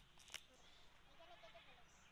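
Two short crisp snaps as a bract is torn off a banana flower by hand, right at the start and about a third of a second later, then near silence with a faint, wavering animal-like call in the background about a second in.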